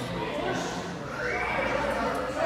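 Children and adults chattering in a training hall, with one child's high-pitched voice held for a moment starting about a second in.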